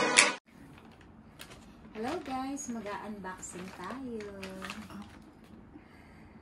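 Intro music that cuts off abruptly about half a second in, followed by a quiet room and then a voice speaking a few short phrases at a moderate level from about two seconds in.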